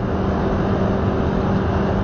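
Steady distant city traffic noise, an even wash of road traffic with a faint constant hum.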